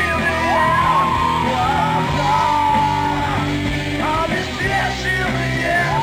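Live rock band playing: electric guitar, bass guitar and drums, with a lead vocal singing long held notes.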